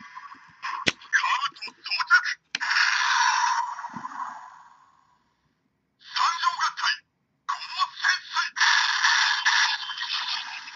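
A sharp plastic click about a second in, as the waist clips lock. Then the combined Transformers Go! figure's built-in electronics play voice lines and sound effects through its tiny speaker: thin, tinny bursts with no bass, broken by two short silences, triggered by locking into the final super combined mode.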